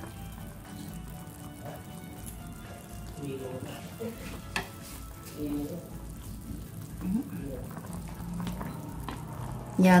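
Ginger-braised duck simmering in an aluminium pan on low heat, a steady soft bubbling sizzle, with a metal spoon clicking against the pan a couple of times.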